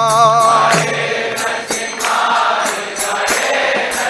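Devotional kirtan singing. A lead voice holds a wavering sung note for about the first second, then a chorus of many voices sings together. Small hand cymbals keep a steady beat throughout.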